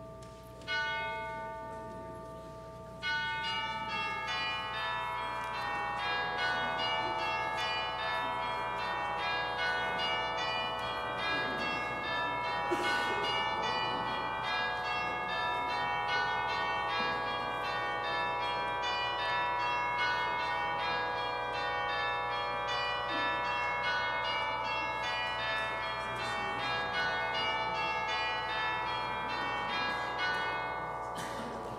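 Church bells ringing a peal. A few single strokes ring out and fade at first; from about three seconds in, many bells sound in quick, repeating descending runs that overlap and ring on.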